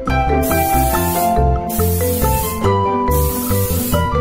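Aerosol can of temporary hair-colour spray hissing in three bursts of about a second each, over background music.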